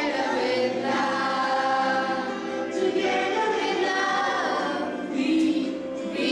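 A group of children and adults singing a song together, voices in unison with no clear beat behind them.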